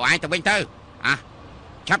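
Dubbed dialogue: a voice speaking in short phrases with brief pauses between them.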